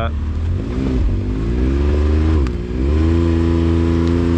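Can-Am Maverick X3 turbo side-by-side's three-cylinder engine revving under load as the machine is driven over an obstacle: the revs climb, ease off briefly about two and a half seconds in, then rise again and hold.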